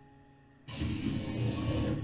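Soft soundtrack music from an anime episode fades away, then about two-thirds of a second in a sudden noisy rush starts and carries on to near the end.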